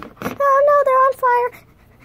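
A child's voice making high-pitched wordless sounds for a plush toy character: four short, steady notes in quick succession, just after a brief knock of handling at the start.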